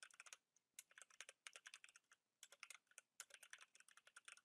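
Faint typing on a computer keyboard: quick runs of keystrokes with short pauses between them.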